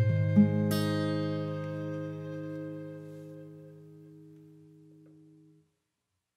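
Closing chord of an acoustic guitar and cello piece: the guitar strums a final chord about half a second in over a low bowed cello note, and the chord rings and slowly dies away. It cuts off to silence shortly before the end.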